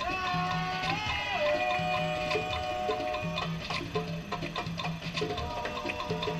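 Latin dance music with hand percussion keeping a steady beat and a long held melodic line that drops in pitch about a second and a half in.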